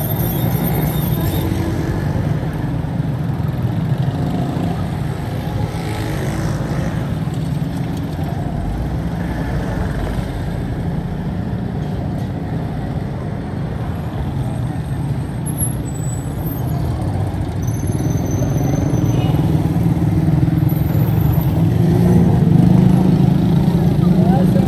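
Street traffic: motorcycles, cars and motor rickshaws running and passing, a steady low engine rumble that grows louder over the last few seconds as a vehicle comes close, with voices in the background.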